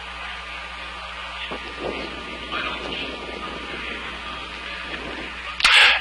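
Steady low hum with an even hiss of background noise; a voice starts just before the end.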